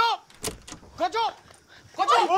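Short startled shouts from a person, one at the start and another about a second in, with a single sharp knock about half a second in.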